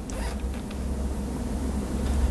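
Open-microphone room noise: a steady low hum with faint rustling and a few light clicks near the start.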